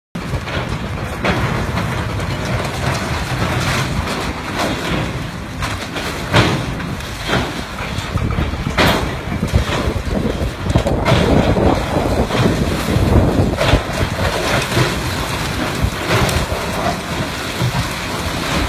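Long-reach excavator's diesel engine running steadily while its arm tears into a building, with repeated crashes and clatter of falling concrete and debris over the top, about half a dozen of them sharp and loud.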